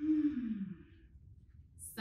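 A woman's breathy sigh, falling in pitch and lasting under a second.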